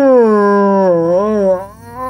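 A person's voice holding one long, drawn-out vowel, like a mock howl. Its pitch slides slowly downward with small wobbles and fades near the end.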